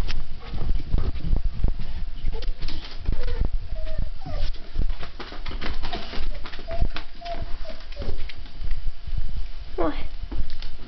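Running footsteps, paw scrabbles and handling knocks from a chase through the house, a rapid string of short thuds and clatters. A few brief whines from an excited dog come now and then in the middle.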